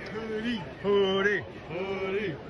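A voice chanting or calling out in drawn-out, evenly held syllables, repeated about once a second, each note dropping in pitch at its end.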